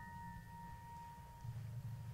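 Piano chord left ringing and slowly dying away, its high notes holding as pure tones until they fade out near the end, over a low room rumble.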